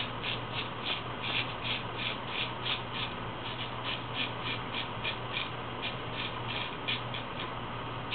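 Full-hollow straight razor, forged from 5160 leaf-spring steel, scraping through lathered stubble on the neck in short, quick strokes, about three a second, with a brief pause near the end.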